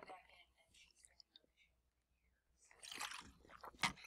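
Faint, indistinct speech with quiet gaps, a voice too low and distant to make out.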